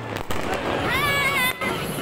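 Fireworks and firecrackers going off all around: a dense, continuous crackle with a few sharper cracks. A high wavering tone rises above it about a second in.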